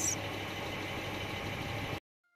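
A vehicle engine idling: a steady low hum with even background noise.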